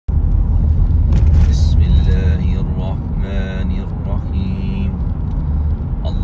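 Steady low rumble of a car driving along a road, heard from inside the car, with a voice briefly over it in the middle.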